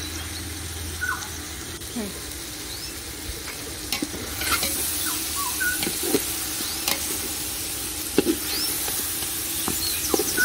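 Meat, onions and spices sizzling in a metal cooking pot, with a metal ladle stirring and scraping against the pot's side from about four seconds in, giving a string of sharp clicks and knocks over the steady frying hiss.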